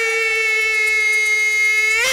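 A solo voice holding one long, steady high note, unaccompanied, as the opening of a Bollywood song.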